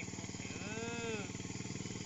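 Small motorcycle engine running at low revs, a steady rapid pulsing. A faint drawn-out voice rises and falls about half a second in.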